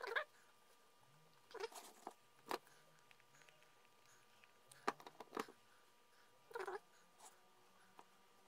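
Faint, scattered handling sounds: short clicks and soft rustles a second or so apart, as a plastic squeeze bottle of glue is worked over a small wooden dowel and a paper-clay arm piece is pressed back onto the figure.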